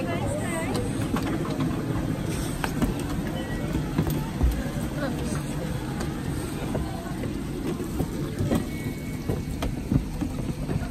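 Footsteps knocking on the wooden planks of a footbridge, a few irregular steps over a steady low rumble, with children's voices briefly at the start.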